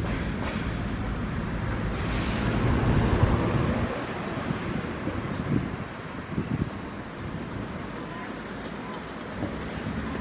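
Outdoor street background noise: a broad rushing sound that swells about two seconds in and fades by about four, then a steadier, quieter hum of the surroundings.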